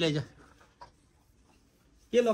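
A man's voice finishing a word, then near silence broken by a single faint click.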